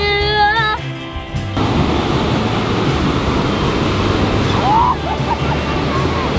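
Background music with singing for about the first second, then a steady wash of ocean surf and wind noise with the music's low beat still under it. A brief rising cry sounds about five seconds in.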